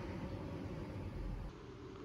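Faint, steady background hiss with a low rumble and no distinct event. It drops in level about one and a half seconds in, where the footage cuts.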